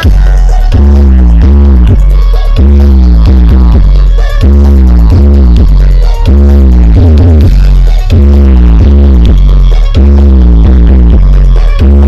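Truck-mounted 'sound horeg' loudspeaker stack of Balada Dewa Audio playing bass-heavy music at full volume. A sliding, wobbling phrase over deep bass repeats about every two seconds.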